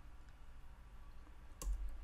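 A single sharp click near the end, over faint room tone: a mouse click advancing the presentation to the next slide.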